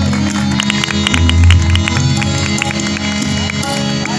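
Tabla and harmonium playing an instrumental passage: a rapid run of tabla strokes, densest in the first three seconds, over held harmonium notes and the deep ringing of the bass drum.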